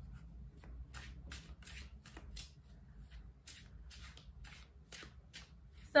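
A deck of tarot cards being shuffled by hand: a run of quick, soft card riffles and flicks, about three a second, faint and irregular.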